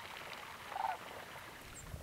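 A large flock of sandhill cranes calling: many overlapping calls form a steady chorus, with one nearer, louder call just before a second in.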